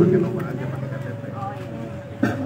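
A man's voice trailing off at the start, then faint background voices and a low steady hum.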